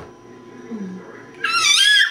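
An almost-one-year-old baby lets out a loud, high-pitched squeal about a second and a half in, wavering up and down in pitch for about half a second.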